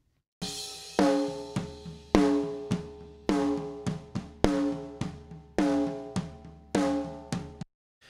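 Recorded acoustic snare drum played back through an aggressive compressor (5 ms attack, 10 ms release, threshold pulled way down). Strong hits come about once a second with lighter hits between, and each hit rings on with a pitched drum tone. Playback cuts off suddenly near the end.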